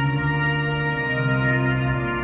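Church organ playing held full chords on manuals and pedals, with a deep pedal bass under many sustained upper notes.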